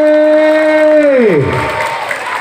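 A voice holds one long, steady note and then lets it slide down and trail off about a second and a half in. Crowd cheering and applause carry on after it.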